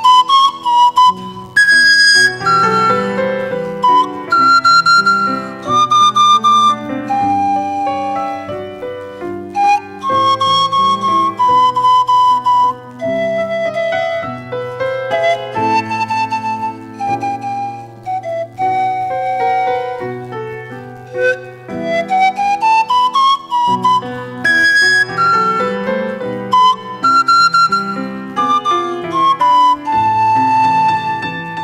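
Pan flute playing a slow melody of long held notes, accompanied by a Julius Carl Hofmann grand piano. The flute slides up into a high note right at the start and again about two-thirds of the way through.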